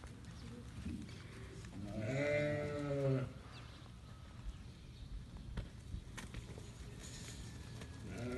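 A Najdi sheep bleating once, a single drawn-out call of about a second that comes about two seconds in.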